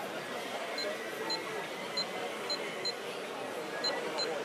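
Short, high electronic beeps from a Futaba 4PX radio-control transmitter's key presses: six quick beeps at irregular intervals, as its buttons are pressed to work through the menus.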